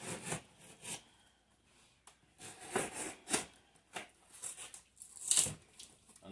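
Small knife slitting the packing tape and cardboard of a shipping box, in short, irregular cutting and scraping strokes, the loudest near the end.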